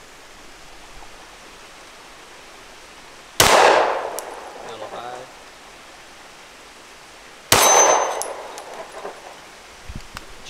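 Two 9mm shots from a Glock 19X pistol about four seconds apart, each followed by a rolling echo. A brief high ring follows the second shot.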